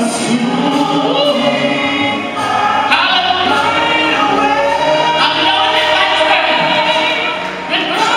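Church choir and congregation singing a gospel song together, with long held notes.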